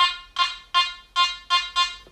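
Makro Gold Kruzer metal detector sounding a run of short, sharp beeps, about three a second, each fading quickly, as a small thin gold chain is passed back and forth over its search coil. This is a clear target signal: the detector is picking up the tiny chain.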